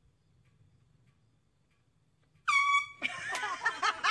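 A handheld canned air horn sounds once, a single short loud blast of about half a second, about two and a half seconds in. Voices and laughter break out straight after it.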